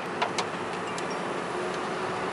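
A few light clicks from small parts being handled in an engine bay as a breather filter is fitted to a catch-can line, over a steady background hum.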